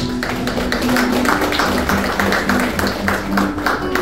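Congregation applauding: dense, even clapping from many hands, lasting about four seconds.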